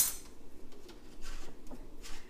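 Faint handling noise of metal measuring spoons and a small plastic bottle on a countertop, with a couple of light clinks about the middle and near the end.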